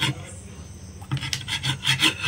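Metal spoon scraping against a plate of biryani: a brief click at first, then a quick run of short scrapes, about five a second, starting about a second in.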